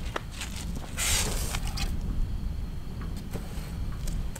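Low, steady outdoor background rumble, with a brief hissing rustle about a second in and a few faint clicks.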